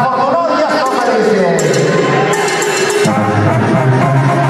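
A man's voice over the arena PA, then live band music starting about three seconds in with a steady bass line.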